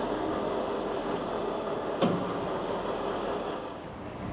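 Steady street noise of traffic and vehicle engines, with one brief sharp click about two seconds in.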